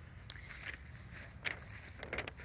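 A few soft footsteps on a dry lawn, three light steps over a faint low rumble.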